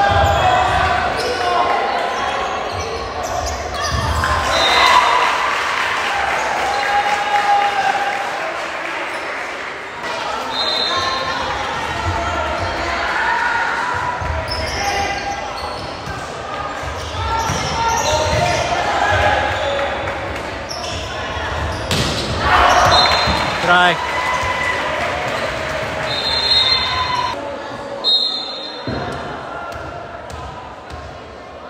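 Indoor volleyball rally in a gymnasium: the ball being struck and hitting the floor, among players calling out and spectators talking, all echoing in the large hall.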